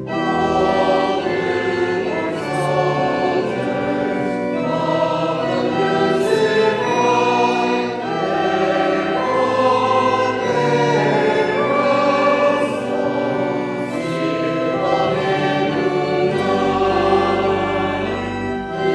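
A hymn sung by a group of voices with accompaniment, moving through held notes of a second or so each.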